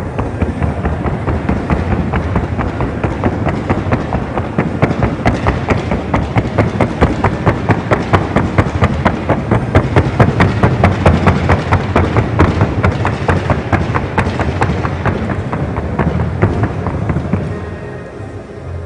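A gaited Colombian criollo horse's hooves striking the wooden sounding board (tabla) in a long, rapid, even drumming, which stops near the end. Background music plays underneath.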